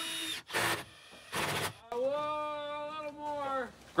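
A bar clamp being tightened onto a wooden roof board, with two short scraping noises, followed by a man's long, steady vocal note that falls off slightly at its end.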